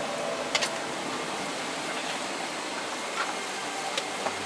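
Steady hiss of an airliner cabin's air conditioning in a Boeing 777-300ER, with a sharp click about half a second in and a fainter one near three seconds.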